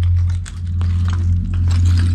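Footsteps crunching over rubble and debris, a few scattered crackles, under a loud steady low hum.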